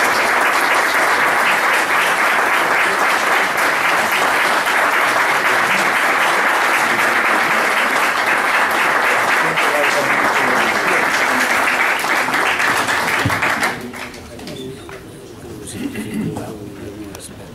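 Audience applauding steadily at the close of a lecture, the applause stopping fairly suddenly near the end, after which quiet voices remain.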